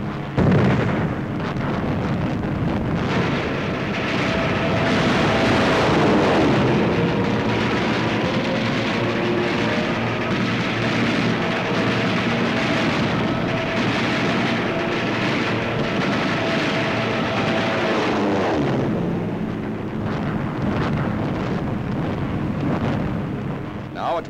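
Dubbed battle soundtrack: a dense, loud rumble of explosions and gunfire over the drone of an attacking warplane, beginning with a sudden blast about half a second in and thinning a little near the end.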